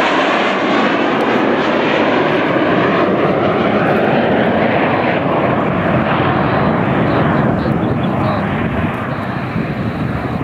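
Formation fly-past of a four-engine turboprop KC-130 Hercules tanker with two jet fighters: a loud, steady mixed engine noise, easing off slightly near the end as the formation draws away.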